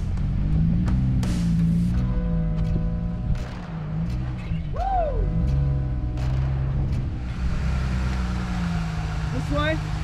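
Jeep Gladiator's engine revving up and down under load as it crawls up a rock ledge, with scattered sharp knocks of tyres and underbody on rock.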